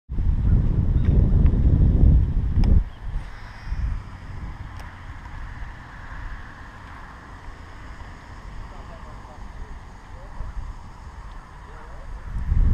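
Wind buffeting a GoPro Hero 3 camera microphone, a loud low rumble for the first three seconds that drops away to a faint steady hiss of breeze.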